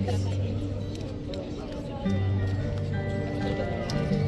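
Live music from a small ensemble with an acoustic guitar and a Casio electronic keyboard, playing long held notes over a steady low bass that swells about halfway through.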